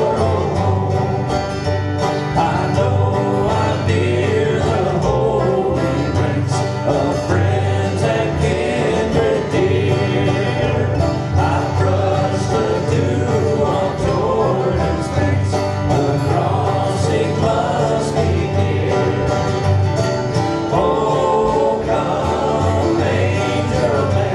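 Bluegrass-style gospel band playing a hymn: a five-string banjo and acoustic guitars strumming and picking, with voices singing along.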